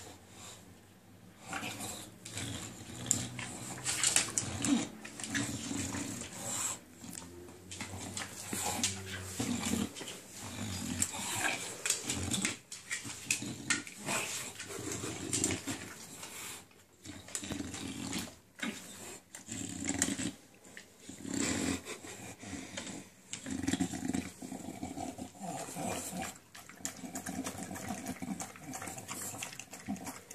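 English bulldog breathing noisily and snuffling over a bowl of raw food, in irregular bursts.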